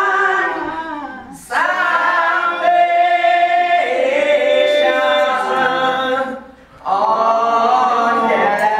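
Unaccompanied singing in long, sustained phrases with held notes. The voice breaks off briefly about a second and a half in and again near the end before taking up the next phrase.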